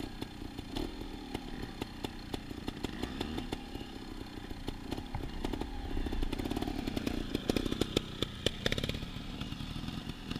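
Off-road motorcycle engine running, its pitch rising and falling with the throttle, with many sharp clattering ticks over it. It grows louder, with quick sharp peaks, about seven to nine seconds in.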